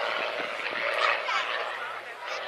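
Many spectators' voices talking over one another in a steady babble.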